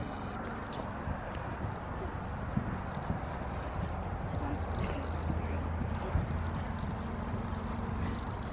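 Muffled hoofbeats of horses cantering on sand arena footing, faint scattered thuds over a steady low hum.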